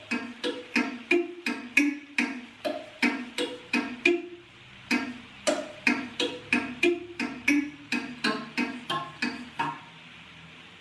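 Homemade thumb piano with wooden coffee-stirrer tines clamped between scrap wood, set on an aluminium waste paper bin as a sound chamber, plucked in a simple tune of short notes, about three a second. The instrument is not tuned properly. The notes stop shortly before the end.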